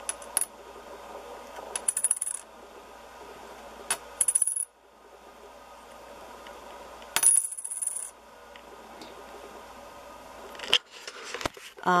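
An 1887 Umberto I silver lira coin dropped onto a marble surface about five times, every two to three seconds. Each drop is a clatter of small bounces, and most end in a high, clear ring from the silver.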